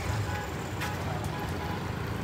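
Steady low rumble of road traffic, with faint music playing underneath.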